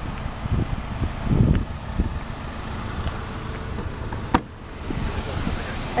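Outdoor background noise with wind on the microphone and handling noise, swelling briefly a second in, and one sharp click a little past four seconds in.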